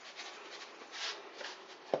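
Salt pouring from a cardboard carton onto raw potato slices in a steel bowl: a faint rustling hiss, a little stronger about a second in.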